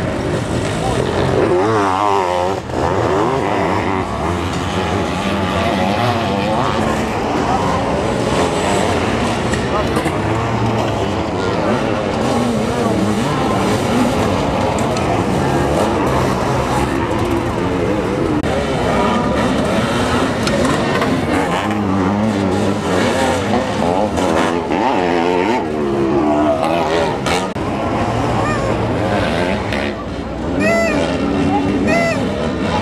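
Sidecar motocross outfits racing, their engines revving up and down over and over as they pass and accelerate out of corners.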